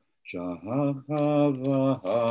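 A man's voice chanting in slow, held, sung tones: three drawn-out phrases with short breaks between them, after a brief pause.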